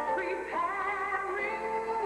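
A woman singing gospel into a microphone, long held notes that waver and slide up in pitch, over a sustained instrumental backing.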